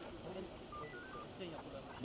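A quick run of about five short electronic beeps at differing pitches, lasting about half a second near the middle, over background voices.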